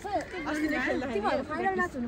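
People's voices chattering, with talk that the recogniser could not make out as words.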